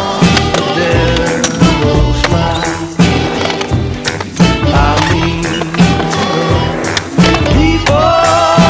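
A song with a steady beat, with skateboard wheels rolling on concrete and the board clacking through tricks.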